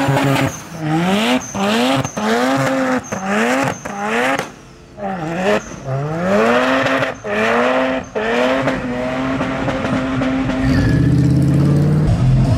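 Mazda RX-7 (FD) engine revved hard over and over while its rear tyres spin in a burnout and drift: the revs climb sharply and drop roughly once a second, then are held steady high from about nine seconds in.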